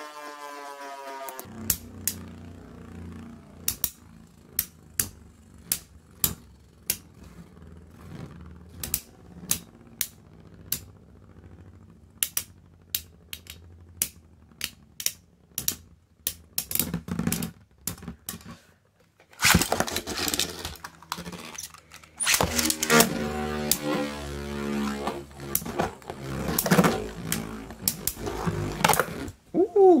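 Two Metal Fight Beyblade tops spinning in a plastic stadium, clicking sharply each time they knock together, about once or twice a second. In the last ten seconds the sound grows much louder and denser, with continuous rattling and scraping as the tops clash and wobble. A falling whine fades out in the first second.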